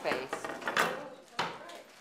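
A couple of sharp knocks, one a little under a second in and another about a second and a half in, among voices.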